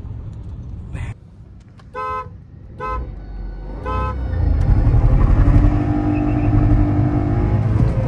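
A car horn toots three short times, then a car's engine, heard from inside the cabin, rises to a loud, sustained run under hard acceleration.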